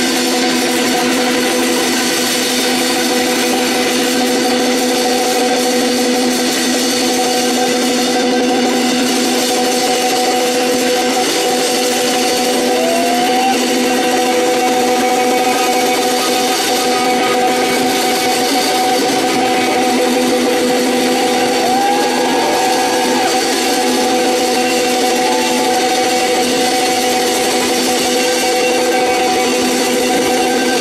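Live band playing a loud, unchanging drone: distorted electric guitars hold one low chord over a wash of cymbals and drums, with a couple of brief sliding guitar notes.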